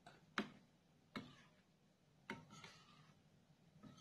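A metal spoon stirring thick rice-flour batter in a bowl, clicking faintly against the bowl's side three times, roughly once a second.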